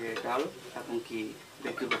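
People talking over a meal, with a man saying "chicken" near the end.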